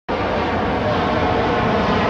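Boeing 787 Dreamliner's jet engines as the airliner rolls along the runway: a loud, steady jet noise with a faint whine running through it.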